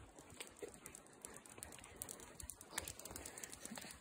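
Faint irregular footfalls and small scuffing clicks on an asphalt path, from someone walking while a dog runs up alongside.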